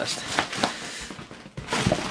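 Rustling and crinkling of plastic packaging and cardboard as items are pulled out of a cardboard box, with a few short sharp ticks and a low bump near the end.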